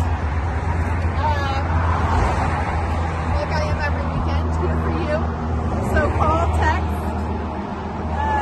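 Road traffic from a busy street alongside, a steady low rumble with passing-vehicle noise, and faint, indistinct voices now and then.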